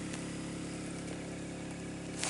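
A small engine running steadily with an even, low hum.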